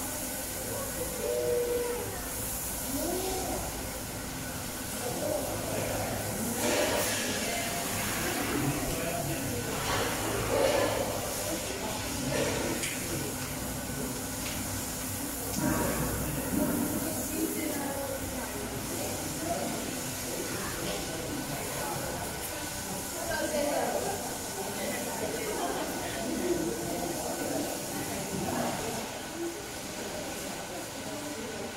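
Indistinct voices of people talking in the background over a steady hiss, with a few brief knocks.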